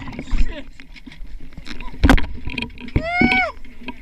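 People's voices above the water. A sharp knock about halfway, then a high-pitched shout that rises and falls in pitch for about half a second.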